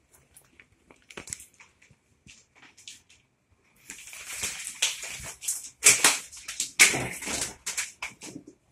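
Rustling and scraping of a plastic strip-curtain door as it is pushed aside, faint at first, then louder and continuous from about four seconds in, with a couple of sharp knocks.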